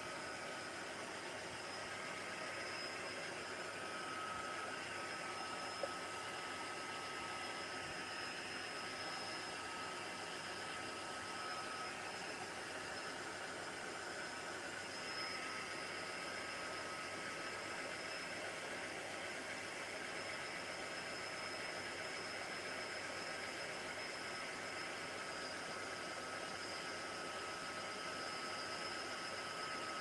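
Craft heat tool blowing steadily over wet acrylic paint to dry it: an even fan hiss with a thin, high steady whine on top.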